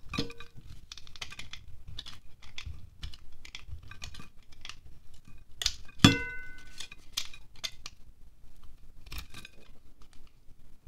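A small serrated knife scraping a wax pillar candle in quick repeated strokes, the wax shavings scratching and crumbling onto a glass plate. About six seconds in comes a loud knock on the glass plate that rings briefly, with a lighter ringing knock at the very start.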